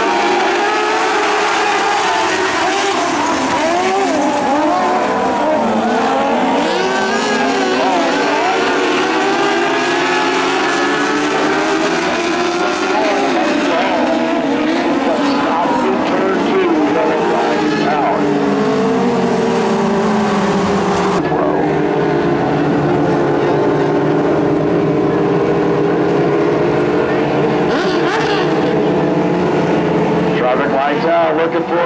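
A field of dwarf race cars with motorcycle engines racing on a dirt oval, many engines revving up and down at once as they pass. In the last third the engine notes turn steadier as the pace slows.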